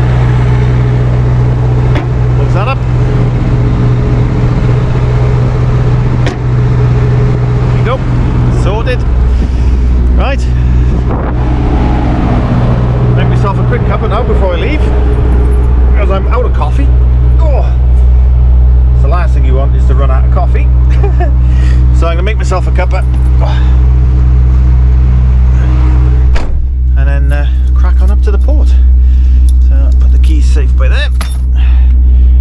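Diesel engine idling with a steady low drone. About 26 seconds in there is a thud, and after it the outside sounds are muffled.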